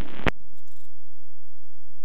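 A radio transmission cuts off with a squelch click about a quarter second in, leaving the steady low rumble of the light aircraft's engine coming through the headset intercom.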